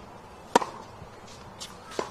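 Tennis ball struck by a racket during a rally: one sharp hit about half a second in and the next one right at the end, about a second and a half apart, with a quieter knock shortly before the second hit.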